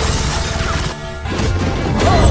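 Movie action-scene audio: crashing, smashing sound effects over music, with a brief dip about a second in.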